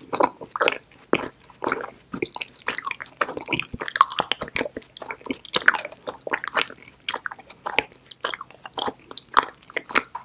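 Close-miked chewing of an edible chocolate bar made to look like a bar of soap, with dense, irregular small mouth clicks throughout.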